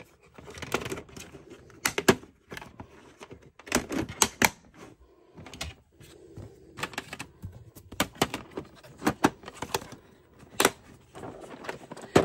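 Hard plastic bead storage trays and their small clear containers clicking and clacking as they are handled, in irregular sharp knocks, while a lid is fitted over a tray.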